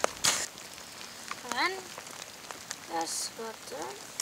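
A rubber boot stepping onto a wet plastic sheet, one short noisy step just after the start, followed by brief faint voices.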